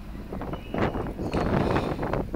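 Wind on the microphone with a few short rustles and clicks from elastic grafting tie being pulled and wrapped around a grafted rootstock.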